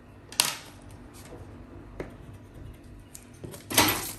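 Handling sounds of a tape measure and pencil on brown pattern paper: a short scratchy rustle about half a second in, a few faint ticks and clicks, and a louder sweep near the end as the tape is pulled across the paper.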